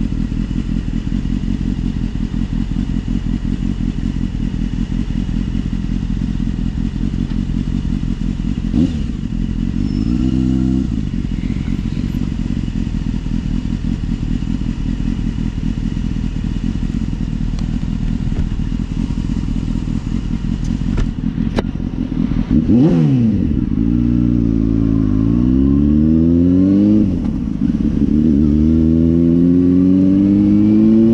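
Motorcycle engine idling, with two short throttle blips about a third of the way in. About two-thirds of the way in it pulls away and accelerates up through the gears, the revs climbing and dropping back at each gear change, heard from a helmet-mounted camera.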